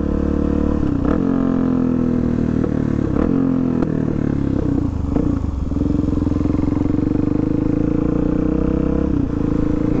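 2016 Suzuki DR-Z400SM's single-cylinder four-stroke engine running under the rider, its pitch falling over the first few seconds as the bike slows, then holding a steady low speed from about halfway.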